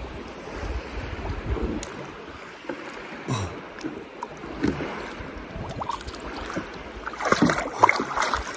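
Water sloshing and splashing around a landing net and a large fish held in shallow water, over a low wind rumble on the microphone. The splashing grows louder about seven seconds in, as hands go into the water to lift the fish.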